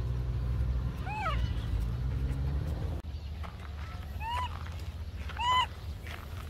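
Young monkey giving three short coo-like calls that arch or fall in pitch, the last the loudest, over a steady low rumble.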